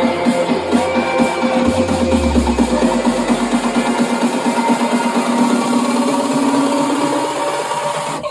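Electronic house music from a DJ mix, with a fast, evenly repeating synth note. The deep bass drops out about three seconds in.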